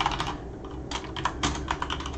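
Quick typing on a computer keyboard: rapid key clicks, a brief pause about half a second in, then another run of clicks.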